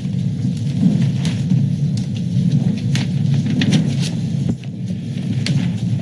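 A steady low rumble of room noise picked up by the meeting-room microphones, with scattered short clicks and rustles of paper being handled.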